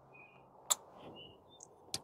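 Elevation turret of a rifle scope being pulled off its post: a single sharp click about two-thirds of a second in, otherwise quiet, with a few faint short chirps in the background.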